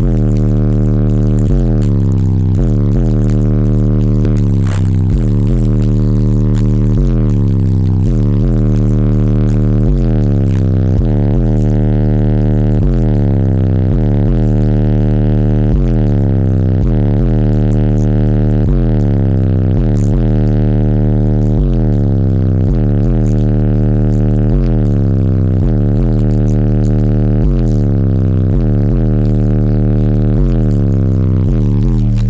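Bass-heavy music played through two Sundown ZV4 18-inch subwoofers with fresh Corey Otis recones, heard inside the Jeep's cabin: deep sustained bass notes repeating in a steady pattern, with little midrange because the mids are turned down. The amps are turned way down because the new subs are not yet broken in.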